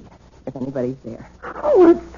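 A woman's voice crying out in distress: short, high, wavering wails and sobs, the loudest a falling cry near the end.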